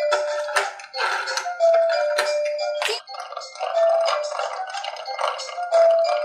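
A tinny electronic tune played through the small speaker of a VTech toy sweet-shop playset, set off by pressing its buttons. It has no bass and a short held note that recurs every couple of seconds.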